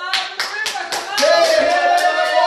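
A congregation clapping in a steady rhythm, with a man's singing voice over a PA system holding a note from about a second in.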